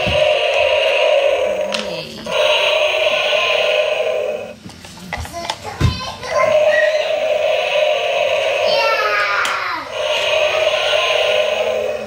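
A battery-powered toy dinosaur's electronic roar sound effect, a buzzy recorded roar that repeats in blasts of about two seconds, one of them sliding down in pitch near the end. In a short gap in the middle, batteries click and knock as they are handled.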